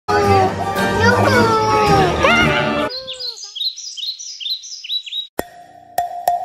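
A toddler's loud, high-pitched cries, sliding up and down in pitch for about three seconds, then a run of quick repeated high chirps. A sharp click about five seconds in, then music starts.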